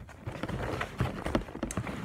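Handling noise from packaging: rustling of paper and cardboard with a run of light, irregular taps and knocks as things are moved about in a box.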